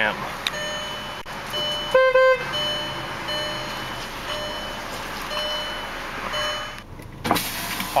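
2005 Volkswagen Passat, engine idling: a short high warning chime repeats about every three-quarters of a second, and the horn sounds once, briefly, about two seconds in. Near the end a power window motor starts to run.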